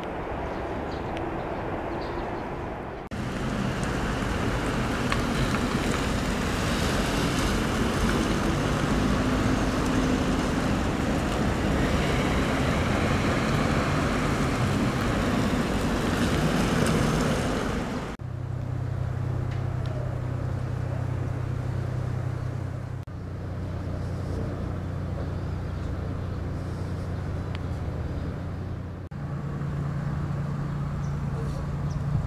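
City street traffic noise in several short clips that change abruptly. The loudest stretch, from about three seconds in until about eighteen seconds, is a steady rush of traffic. After that comes a quieter stretch with a steady low engine hum.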